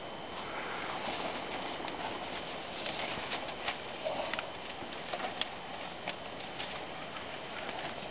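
Scattered snaps and crackles of twigs and dry branches as a person crawls into a shelter of piled brushwood, over a faint steady background hiss.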